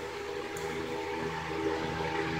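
Steady background hiss with a faint, even hum underneath, unchanging throughout.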